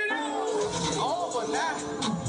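A person's voice making drawn-out calls that rise and fall in pitch, over background music.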